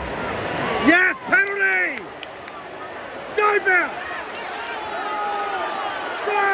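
Stadium crowd noise with individual spectators shouting over it: loud calls about a second in, again near the middle, and a longer held shout near the end.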